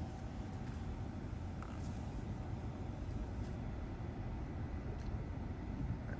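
Steady low background rumble and hum inside a parked car's cabin, with a few faint ticks.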